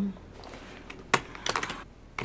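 Typing on a computer keyboard: a single keystroke a little after a second in, then a quick run of keystrokes.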